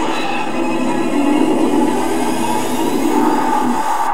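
A dense rushing roar from a film or commercial soundtrack, over sustained music tones; the roar cuts off suddenly at the end.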